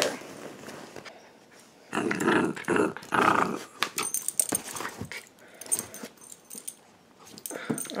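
Corgi puppy growling during a tug-of-war over a rope toy: two rough growls about two to three seconds in, followed by scattered light clicks and rustles of the tugging.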